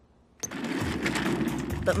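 A cartoon scene-change sound effect: after a brief hush, a sudden click and then about a second and a half of gritty, rushing noise.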